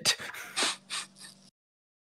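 Short, breathy laughter: a few quick puffs of air that fade away, then cut to complete silence about a second and a half in.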